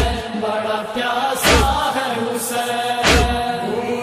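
Loud devotional lament chant, a Muharram nauha, with a sung vocal line over a heavy drum beat that falls three times, about every one and a half seconds.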